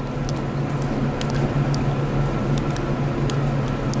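Steady low hum inside an original Montgomery hydraulic elevator cab, with a faint higher steady tone and a few light clicks.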